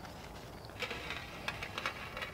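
Faint rustling of flower stems and leaves as a bouquet is handled and adjusted in a glass vase, with a few brief light rustles about a second in.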